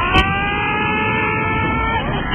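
A loud, siren-like wailing tone over a dense noisy backdrop in a radio broadcast. The tone rises at the start, holds steady, then dips near the end, with a sharp click a moment in.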